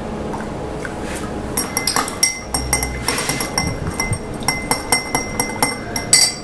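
Metal bar spoon clinking repeatedly against a glass mixing glass as the cocktail is stirred, starting about a second and a half in, with several light ringing clinks a second.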